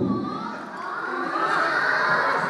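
A group of children cheering and shouting together, many voices at once, swelling about a second in.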